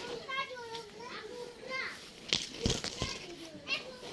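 Children's voices in the background, calling and chattering, with a few sharp knocks a little past the middle.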